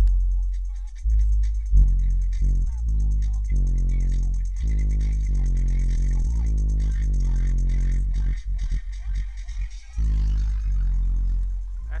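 Music playing through the Cadillac's aftermarket car stereo, heard inside the car, with the subwoofer level and the bass EQ turned down: "no bass".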